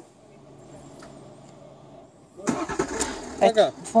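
A BMW 7 Series engine starting by remote command from its display key with no driver inside. It catches suddenly about two and a half seconds in, after a quiet stretch, and keeps running.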